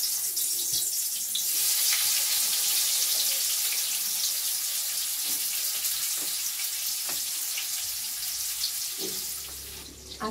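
Food sizzling in hot oil in a wok on a gas stove: a steady hiss with small crackles that swells over the first couple of seconds, then slowly dies away near the end.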